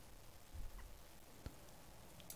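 Near silence: faint room tone, with one soft click about one and a half seconds in.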